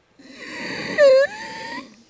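A person's breathy, strained vocal noise of exasperation, a frustrated groan-like sound with a short, louder squeak about a second in that dips and then rises in pitch.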